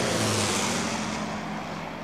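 Propeller engines of a low-flying Avro Lancaster bomber droning steadily, fading away over the two seconds.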